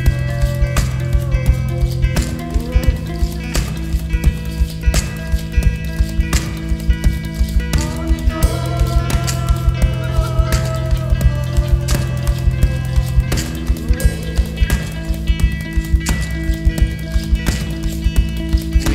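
Small band playing an instrumental passage live, with no singing: electric guitar and keyboard lines over a held low note that changes pitch a few times, driven by a fast, even clicking percussion beat.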